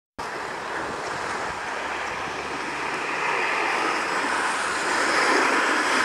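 Steady hiss of skis sliding over an artificial dry-slope mat, growing slowly louder as a skier comes close.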